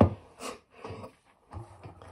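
Faint, brief handling noises as fennel fronds are gathered on a plastic cutting board, a few soft touches over a quiet kitchen.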